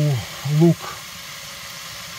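A man says one word, then a steady hiss of rabbit meat and vegetables frying in a pot.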